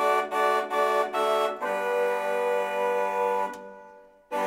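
Reed wind instruments playing several notes together in close harmony, with a reedy, organ-like sound. A few short separated notes come first, then a long held chord that fades away near the end.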